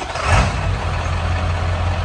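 Ford 7.3 Powerstroke turbo V8 diesel running just after starting, with a brief surge in level about a third of a second in, then a steady low idle.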